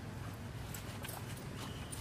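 Macaque eating close by: a few sharp, irregular crunching clicks from chewing and handling food, over a steady low rumble. A short high steady tone sounds near the end.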